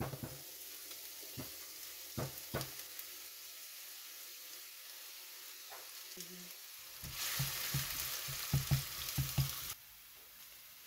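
Chopped onion sizzling as it drops from a wooden board into hot oil in a non-stick frying pan, with a few sharp knocks early on. About seven seconds in, the sizzling grows louder, with a quick run of light knocks, then cuts off just before the end.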